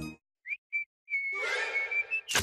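A cartoon whistle sound: two short high whistle notes, then one held steady whistle note from about a second in.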